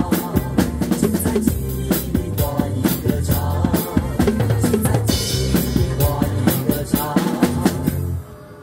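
Acoustic drum kit played over the song's recorded backing track: fast snare, bass drum and rimshot hits with cymbals, and a cymbal crash about five seconds in.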